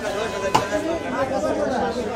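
Market chatter: several people talking over one another, with one sharp knock about half a second in.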